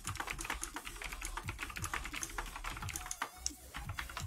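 Typing on a keyboard: a quick, irregular run of key clicks, several a second.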